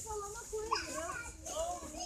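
Children's high-pitched voices chattering and calling, with no clear words, over a steady low store hum.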